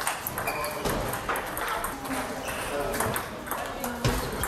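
Table tennis balls clicking off bats and tables, many irregular strikes from several tables at once in a large hall, with voices in the background.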